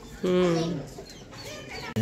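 A young goat bleats once, a single pitched call of about half a second starting just after the beginning, with faint chirps of chickens and chicks behind it.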